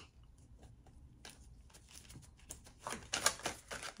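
Tarot cards being shuffled by hand: a run of light, quick card clicks and flicks that grows denser and louder in the last second and a half.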